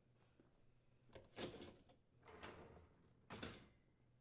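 Wire dishwasher rack sliding out along its rails on its rollers, heard as three short, faint sliding sounds about a second apart.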